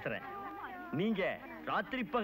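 A man's voice talking and laughing, sliding up and down in pitch in a playful, sing-song way.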